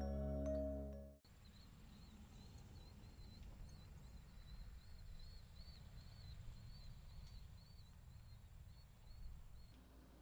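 Soft marimba-like mallet music ends about a second in. Faint outdoor ambience follows, with a low rumble and a run of small high chirps repeating until just before the end.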